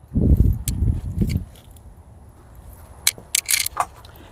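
A low rumble for the first second and a half, then a quick run of dry crackles and clicks about three seconds in: dry gladiolus seed heads and stems being handled and broken open for their seeds.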